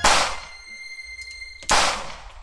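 Two revolver gunshots about 1.7 seconds apart, each a sharp crack that dies away quickly, with a faint high ring lingering between them.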